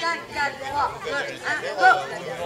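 Speech only: people talking.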